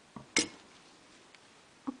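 Metal scissors set down on a table with a single sharp metallic clink, a soft tap just before it.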